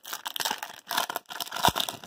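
Plastic wrapper of a hockey card pack being torn open and crinkled by hand, with a short sharp click near the end.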